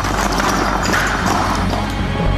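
Stone blocks of a mortarless model arch crashing down and clattering onto the floor in a rapid run of knocks: the structure collapsing once its flying buttress is taken away. Dramatic music plays underneath.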